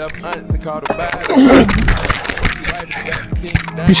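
Quick footfalls and clothing rustle on a body-worn mic as a player runs a footwork drill on artificial turf, over rap music in the background. A voice is heard briefly midway.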